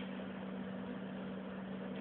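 Cooling fans and power supplies of a running vacuum-tube RF power supply: a steady whir with a constant low hum.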